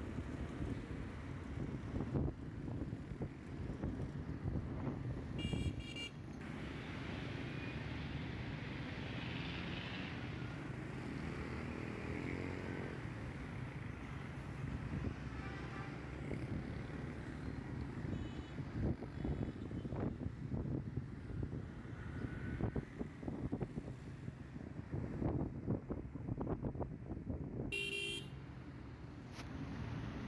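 Street traffic heard from a moving vehicle: a steady engine and road rumble, with vehicle horns honking, once about six seconds in and again, louder, near the end.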